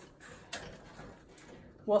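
Plastic water bottles being fitted onto the wire bars of a small-animal cage: light handling rattles and one sharp click about half a second in.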